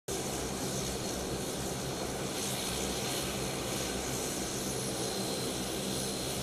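De Havilland Canada Dash 8-400 turboprop airliner taxiing with both engines and propellers running: a steady, even propeller drone with a thin high whine above it.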